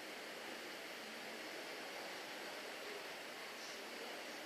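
Steady, faint background hiss with no distinct sound events.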